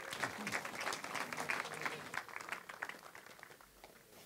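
Audience applauding, the claps thinning out and dying away about three and a half seconds in.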